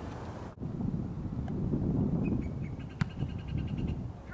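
Wind buffeting the camera microphone, a heavy low rumble that swells in the middle, with one sharp knock about three seconds in.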